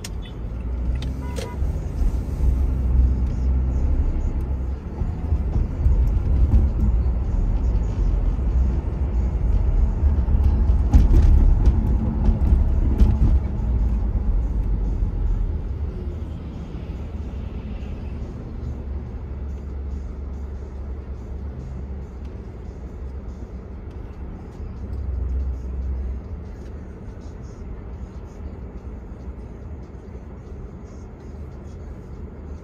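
Car driving on a city street, a steady low road and engine rumble that swells about four seconds in and eases off in the second half.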